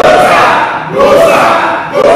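A small group of voices shouting together in a loud rallying cry, in two bursts with a short break about a second in.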